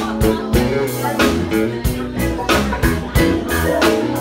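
Live funk band playing: electric bass, electric guitar and drum kit, with regular drum and cymbal hits over sustained bass and guitar notes.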